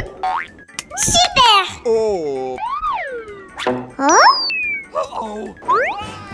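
Cartoon sound effects and high, squeaky gibberish voices of animated characters, a string of short sounds whose pitch slides up and down, ending with a quick rising whistle-like sweep.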